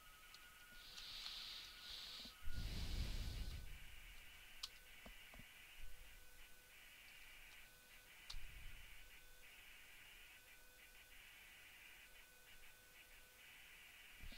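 Faint room tone with a steady high electrical whine. A short breathy rush comes about two and a half seconds in, and a few scattered keyboard clicks follow.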